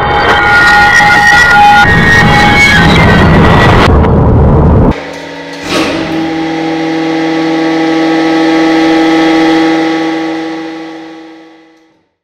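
Glass crackling and shattering under a hydraulic press, a dense run of sharp cracks over steady tones that cuts off abruptly about five seconds in. Then a long ringing chord that slowly fades out.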